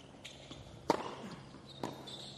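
Tennis rally on a hard court: two sharp knocks of the ball, a loud racket strike about a second in and a fainter one near the end.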